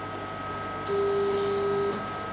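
CNC router's stepper motors whining at one steady pitch for about a second as an axis is jogged from the wireless pendant, starting and stopping abruptly.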